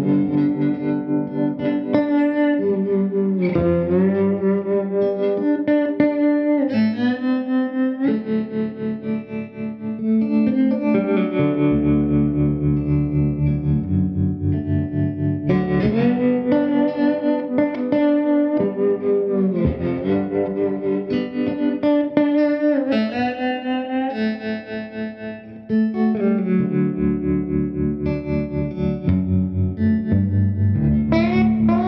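Amplified electric slide guitar in open D tuning playing a slow blues. The slid notes glide up and down into pitch over a repeated low bass note, and twice a phrase is left ringing and dying away before the playing picks up again.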